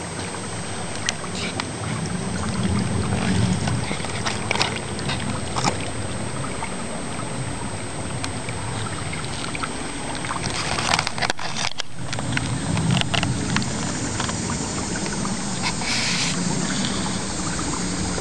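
Mountain creek water running over rocks: a steady rushing noise, with a few light clicks from the camera being handled.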